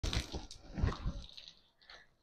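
Water from a garden hose spraying and splashing onto a concrete courtyard floor, a hiss that fades out after about a second and a half. Several low thumps come with it in the first second.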